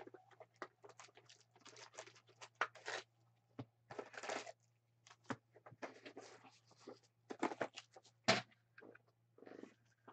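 A cardboard trading-card hobby box being opened and its foil card packs pulled out and set down on a table. Irregular rustling, crinkling and tearing come with a few sharp taps, over a low steady hum.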